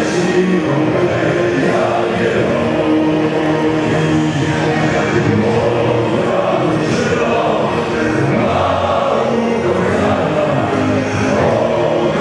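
A large crowd of football supporters singing a chant together in unison, loud and steady.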